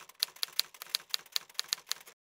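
Typewriter keys striking in a quick, slightly uneven run of sharp clacks, about five a second, a typing sound effect that stops abruptly.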